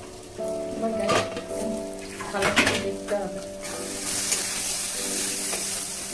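Egg masala frying in a steel wok, with sharp metal clanks of the lid and spatula against the wok about a second in and again around two and a half to three seconds. From about four seconds a louder, steady sizzle takes over as the uncovered food fries.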